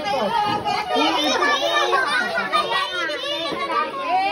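Several children's voices talking and calling out excitedly at once, high-pitched and overlapping.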